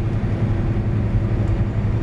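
Steady drone inside the cab of a Volvo 780 semi-truck cruising on the highway: the Cummins ISX diesel engine's low, even hum under road noise.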